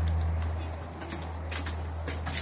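A steady low hum that fades away within the first second, followed by a few sharp clicks about one and a half seconds in.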